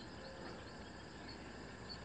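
Quiet background ambience with faint, scattered high chirps and no other distinct event.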